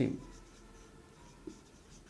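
Marker pen writing on a whiteboard: faint, soft strokes of the felt tip across the board, with a small tick about one and a half seconds in.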